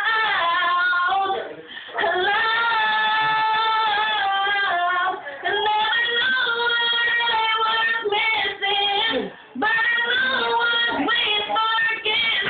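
A young woman singing, holding long notes with vibrato and pausing briefly for breath between phrases.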